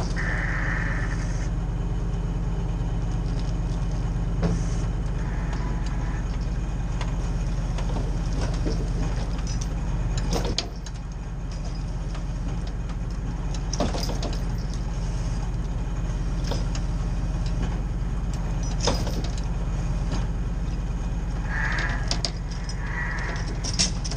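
Bucket truck's engine running steadily with a low hum while the boom moves the bucket. A few sharp clicks or knocks come every few seconds, and the level dips about halfway through before building back up.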